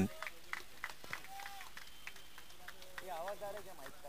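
Faint, distant voices on the cricket ground, with one short call about three seconds in and a few light clicks.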